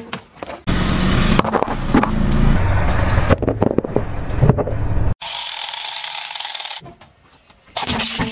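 Car tyre rolling slowly over asphalt and crushing small objects, with scattered crunches and sharp cracks. The sound jumps abruptly every second or two from one short clip to the next.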